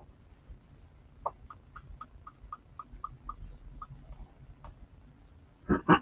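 A run of light, evenly spaced clicks from computer use at a desk, about four a second for a few seconds, then trailing off into a couple of single clicks.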